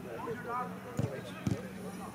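A football being kicked: two dull thuds about half a second apart, with players' voices calling across the pitch.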